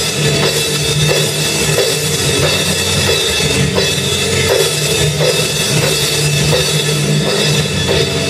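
Live rock music with no singing: a drum kit keeps a steady beat with cymbals, over sustained bass notes.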